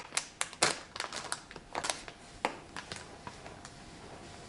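Hands patting and feeling over a tabletop, a round cutting board and a plastic-wrapped tortilla pack: a quick run of light taps and crinkles, busiest in the first couple of seconds and thinning out after.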